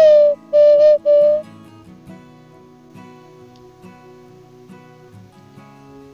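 Hand-carved wooden bird call (pio) blown in three short, loud whistled notes over the first second and a half, the first starting slightly higher and dipping in pitch, imitating a bird's call to lure it in. Acoustic guitar music plays quietly underneath throughout.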